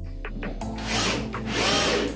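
Cordless drill-driver running in two short bursts, about half a second in and again near the end, driving a screw through a metal drawer-runner bracket into a furniture panel.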